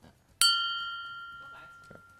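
A single bell-like chime strikes sharply about half a second in, then rings with a few clear tones that fade away slowly over about two seconds. It is a quiz sound effect, likely marking the answer just given.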